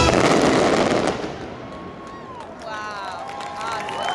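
A dense barrage of fireworks crackling loudly, stopping abruptly about a second in. The last of the show's music fades, and spectators' voices cheer in the quieter second half.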